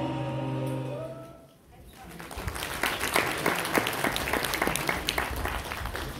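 The song's closing music fades out, and about two seconds in an audience starts to applaud steadily.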